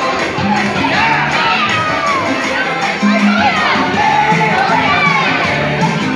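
A crowd of children shouting and cheering over dance music with a steady bass line.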